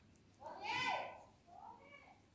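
A high-pitched animal call of the meowing kind: one long call that rises and falls about half a second in, then a shorter, fainter one near the end.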